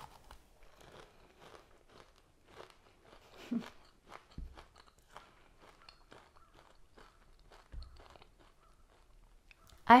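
Chewing a bite of a frozen Butterfinger candy-bar ice cream bar: a run of small, faint, crumbly crunches, with one brief louder sound about three and a half seconds in.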